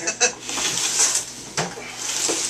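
A clear plastic tub of snake eggs being handled on a hard floor, with a rustling scrape and a single knock about one and a half seconds in, among men's voices.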